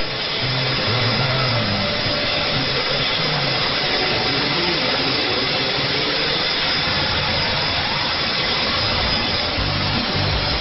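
Steady hiss and crackle of shortwave band noise from an AM receiver tuned to a weak, fading broadcast station in the 41-metre band. Only faint traces of the programme come through.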